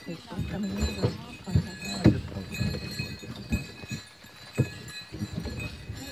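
Scattered, irregular knocks and thumps, the loudest about two seconds in, with faint voices in the background.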